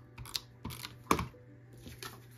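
Desk-top crafting handling sounds: a plastic tape runner laying adhesive on a paper photo mat, then set down, with cardstock sliding and being pressed. A quick string of short clicks and scrapes, the loudest about a second in.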